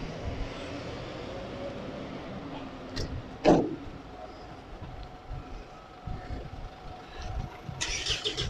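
Road traffic passing in a city street, with a short louder sound about three and a half seconds in and a faint steady hum in the second half.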